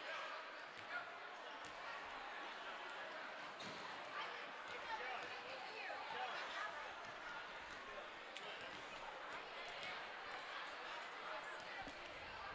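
Basketballs being dribbled on a hardwood gym floor, scattered irregular bounces heard faintly over a steady murmur of crowd voices in a large gym.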